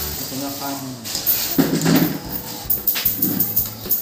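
The metal weights along the bottom edge of a new cast net clinking and jingling against each other inside its plastic bag as the net is lifted and turned, with a run of quick clinks about three seconds in.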